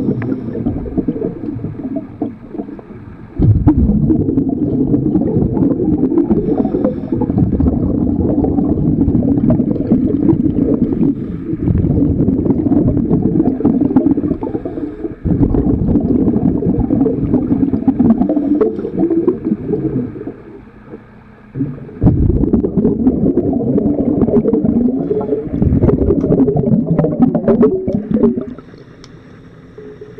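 Underwater noise from a diver working on a boat hull: a dense, low rumbling and bubbling that runs in long stretches, broken by three short, quieter pauses.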